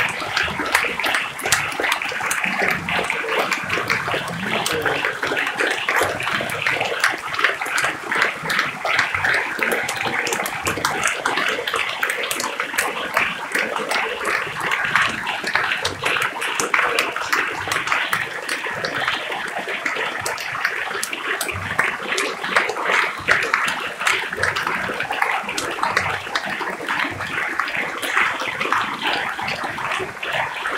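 A large audience applauding, dense and steady.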